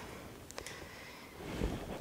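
Faint handling noise as leafy branch stems are set into a glass vase: a couple of light clicks about half a second in, then a soft low rustle near the end.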